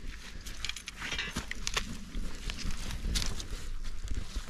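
Irregular rustling, clicks and shuffling footsteps of boots in wet mud and dry grass, over a low rumble.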